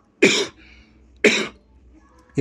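A man coughs twice into his fist, the coughs about a second apart.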